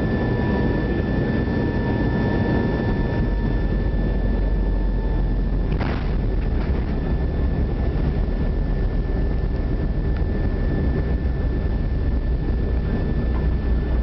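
Inside the cabin of an Avro RJ airliner during its landing roll: the steady rumble of its turbofan engines and the rolling airframe, with a steady high engine whine. A fainter tone fades out about five seconds in, and there is one brief knock about six seconds in.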